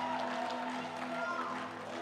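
Soft live church worship music: sustained chords held steadily.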